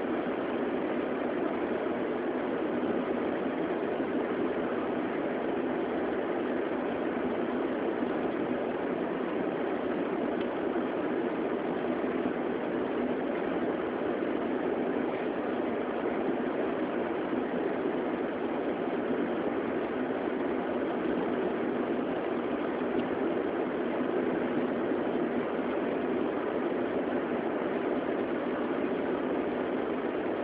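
Steady noise of a car driving, heard from inside the cabin: engine and tyre noise on a snow-covered road, even throughout.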